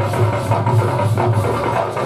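Live Sambalpuri orchestra music played loud through a PA, with a steady drum beat over a heavy bass line.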